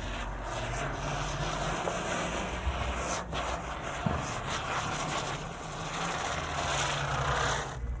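A sparking ground firework giving off a continuous rough hiss as it sprays sparks, cutting off abruptly near the end.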